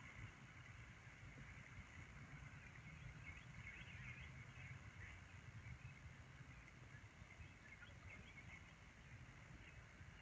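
Near silence: faint outdoor ambience, a low rumble with scattered faint high chirps.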